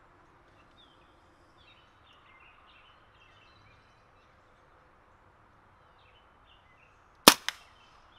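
A single shot from a .22 Brocock Atomic XR PCP air pistol about seven seconds in: a sharp crack with a fainter second crack a fraction of a second after it, the pellet just nicking a piece of chalk downrange.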